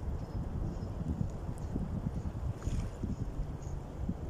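Wind buffeting the camera microphone on an open beach: an uneven low rumble that comes in gusts.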